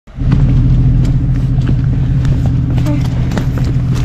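Jeep Cherokee XJ engine running steadily at low revs as it crawls up a rocky trail, with scattered clicks and knocks over it.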